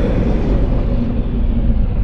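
Deep rumbling tail of a cinematic sound-design boom: a steady low rumble whose higher hiss slowly fades away.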